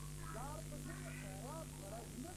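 Faint animal calls, several short rising chirps in quick succession, over a steady low electrical hum.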